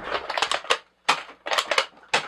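Quick runs of hard plastic clacks and rattles as orange toy foam-dart blasters are grabbed and handled, in two bursts with a short gap about halfway.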